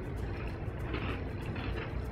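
Two people chewing bites of a soft chocolate brownie cookie with their mouths closed: faint, irregular chewing noises over a steady low hum.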